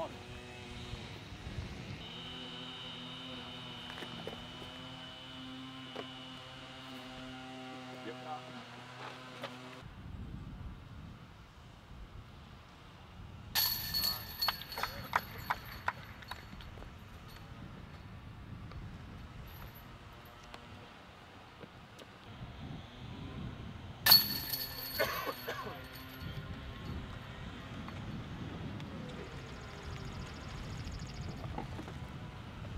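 Two disc golf putts hitting the chains of a basket, each a sudden metallic crash followed by about two seconds of jingling chain rattle; the second, about two-thirds of the way through, is louder than the first. A steady hum fills the first third before a cut.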